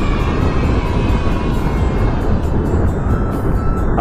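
Steady rumble of a moving motorcycle, mostly wind rushing over a handlebar-mounted microphone along with road and engine noise, with faint background music underneath.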